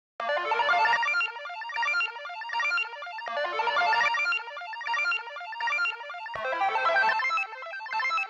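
Boom bap hip-hop instrumental beat built on a sampled loop that repeats about every three seconds.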